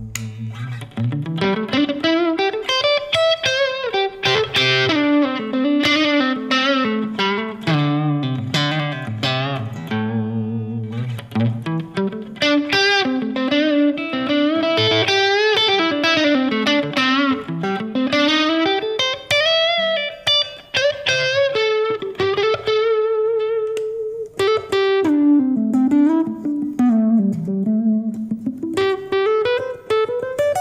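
Hagstrom Impala electric guitar played through an amp: a continuous single-note lead passage of quick runs up and down, with a held note shaken with vibrato partway through.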